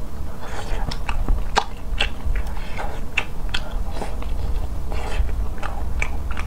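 Close-miked chewing of a mouthful of rice and eggplant, with wet mouth sounds and sharp clicks roughly one or two a second.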